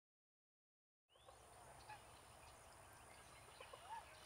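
Silence for about the first second, then faint wetland ambience: distant birds giving a few short rising-and-falling calls over a low rumble and a thin, steady high tone.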